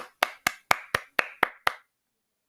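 A person clapping hands in a steady rhythm, about four claps a second, eight sharp claps that stop shortly before the end.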